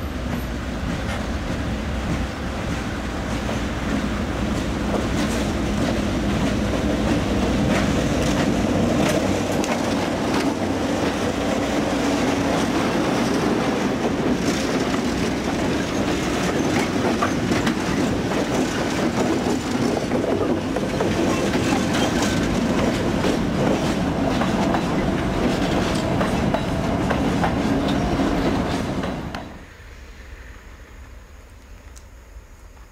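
Freight train hauled by three GE C30-7 diesel locomotives passing close by, only one of them with its engine running. The engine sound is followed by the steady clickety-clack and rattle of the wagons' wheels over the rail joints. The sound drops off sharply just before the end.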